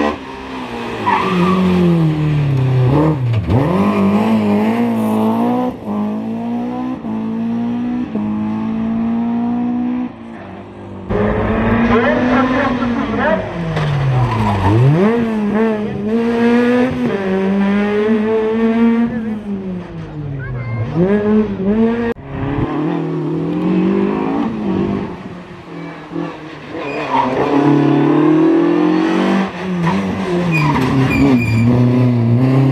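Rally cars on a tarmac sprint stage, one after another with abrupt cuts between them: first a BMW E30 M3, then a Ford Fiesta rally car. Each engine revs hard, rising in pitch and dropping sharply at every gear change, with some tyre squeal in the corners.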